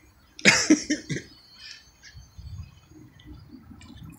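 A man coughing: a quick run of about four coughs, the sign of someone who is unwell.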